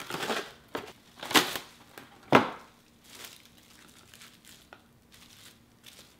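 Plastic cling wrap rustling and crinkling as it is pulled from its box and wrapped by hand, with a few loud crackles in the first half, the sharpest a little over two seconds in, then fainter crinkling.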